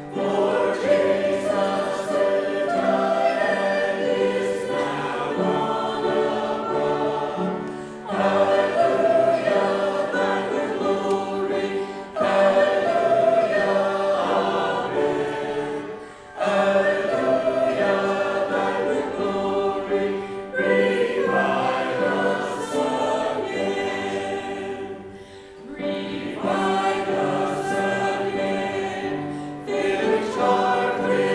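Congregation singing a hymn together, many voices in unison, with brief dips between phrases every four to five seconds.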